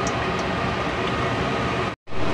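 Steady hiss of a gas burner under a wok of broth simmering, with a few faint ticks from the bubbling liquid; the sound cuts off abruptly at the very end.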